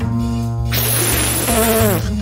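Cartoon sound effect: a steady buzz for under a second, then a burst of hiss, ending with a short falling vocal sound.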